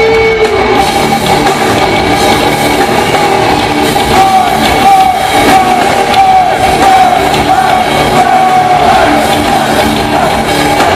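Live heavy metal band playing: electric guitars and drum kit, with a man singing over them, his sung line most prominent from about four seconds in.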